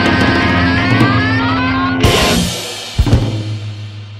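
Heavy blues rock song reaching its end: distorted electric guitar holds notes that bend upward over drums, then a final crash hit about halfway through and two last strokes about a second later, after which the chord rings out and fades.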